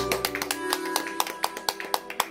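Live music at the end of a song: the final held chord cuts off, its tones ringing faintly away under a run of sharp, irregular taps, several a second.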